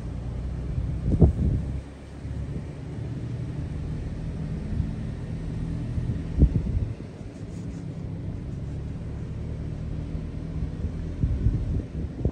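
A car moving slowly, its engine and road rumble low and steady as heard from inside the cabin, with two brief knocks, about a second in and again about six seconds in.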